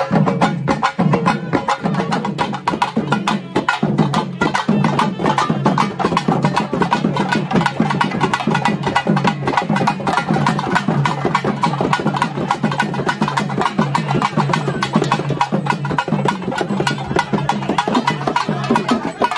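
Fast, dense traditional drumming of rapid, sharp stick strikes over a steady low tone, the percussion music that accompanies a kavadi dance.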